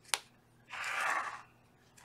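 A sharp click, then a cardstock page of a ring-bound paper mini album being flipped over, a dry paper swish lasting about half a second around the middle.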